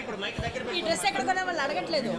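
Speech only: several people chatting at once at a moderate level.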